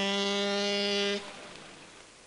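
A ship's horn sounding one long, steady blast that stops about a second in and dies away.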